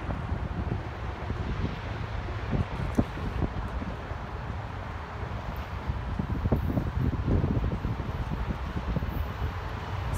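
Wind buffeting the microphone, a gusty low rumble with a few scattered knocks, strongest about a third of the way in and again past the middle.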